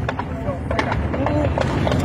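Automatic gunfire from a submachine gun: a run of sharp cracks in quick, irregular succession, over the low running of a car engine.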